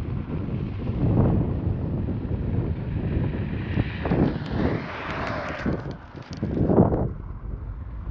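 Wind buffeting the microphone of a camera on a moving bicycle, in uneven gusts, with a car passing the other way about halfway through, its tyre hiss swelling and fading.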